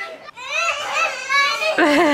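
A young girl's high-pitched squeal, one drawn-out wavering cry that grows louder near the end, as she is sprayed with water from a garden hose.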